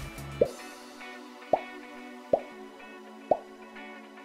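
Four short pop sound effects, each a quick upward blip, about a second apart, marking headlines popping onto the screen, over light background music whose bass drops out about half a second in.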